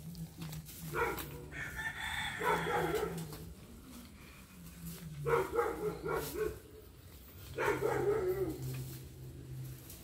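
Rooster crowing several times, each crow lasting a second or two. A laughing "thank you" comes near the end.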